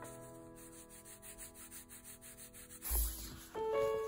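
Coloured pencil shading on journal paper, a quick even scratching of about five strokes a second, under soft piano music. About three seconds in, the scratching stops with a low thump and the piano comes up louder.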